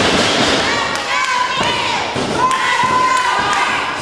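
Live wrestling match in a hall: thuds of bodies hitting the ring, with shouting voices from the wrestlers and crowd.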